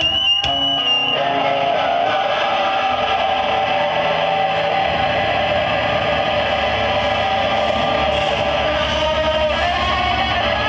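Live mathcore band playing loud, led by a distorted electric guitar, with a high held tone in the first second. The low end of bass and drums fills in from about halfway through.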